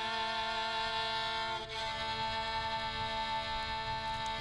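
Slow, quiet song intro: long held violin notes over a sustained chord, the harmony shifting once partway through.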